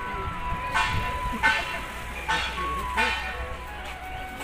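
Iron griddles and steel pans clanging against each other as they are handled, four ringing metallic strikes with the second the loudest. A simple electronic tune of single tones stepping up and down in pitch plays behind them.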